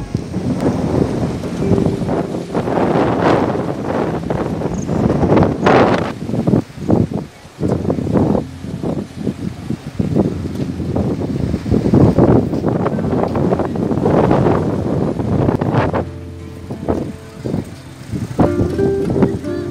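Wind buffeting the microphone, a rough rumble that surges and drops unevenly. Near the end music begins to come in.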